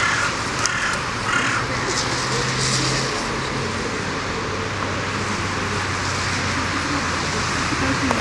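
Steady street traffic noise with a low hum, two short harsh calls in the first two seconds, and a woman's voice speaking faintly.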